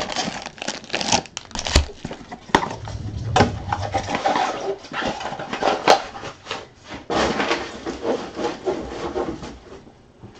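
A sealed box of trading cards being opened by hand: scratchy rustling and scraping of cardboard and wrapping, broken by a few sharp clicks.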